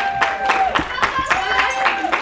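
Hands clapping in an uneven rhythm, a few claps a second, among a small group, with a voice holding long drawn-out calls over the claps.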